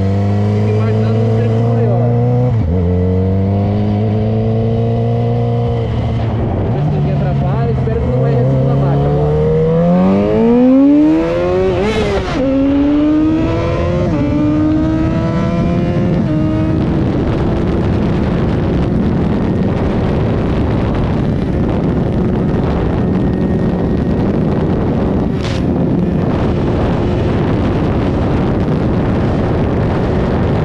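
Yamaha XJ6's remapped 600 cc inline-four engine accelerating at full throttle, its pitch climbing and then dropping at each of several upshifts through the gears. In the second half, heavy wind rush on the microphone at high speed nearly buries the engine.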